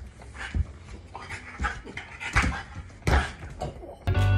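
French bulldog leaping at a spring-mounted punching-ball toy: about four sharp knocks as it hits the ball and lands on the hard kitchen floor, the last the loudest, with the dog breathing hard between them.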